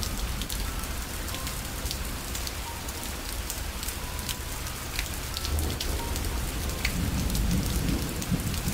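Steady rain ambience: an even patter with scattered sharper drop ticks, and a low rumble swelling over the last few seconds.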